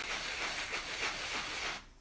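A worn sanding block rubbing back and forth over dried spackle through a stencil, buffing the raised pattern smooth; a steady scratchy rasp that stops shortly before the end.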